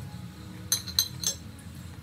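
Metal kitchen tongs clinking three times in quick succession, short bright metallic clicks.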